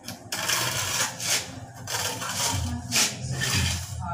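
Two steel trowels scraped against each other, a run of short rasping metal-on-metal strokes scraping tile mortar off the blades.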